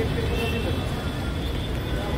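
Busy city street traffic: a steady rumble of car and bus engines, with voices of people nearby mixed in.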